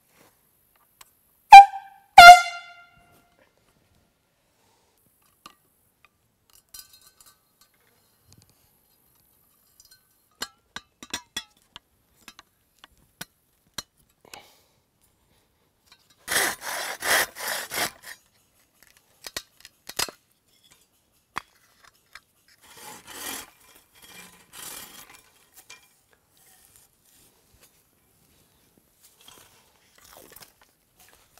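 Two short blasts from a canned air horn, set off by the wooden tripwire trigger arm, about a second and a half and two seconds in; the second is slightly longer. Later come scattered small wooden clicks and a few seconds of rasping on wood as the trigger mechanism is worked on.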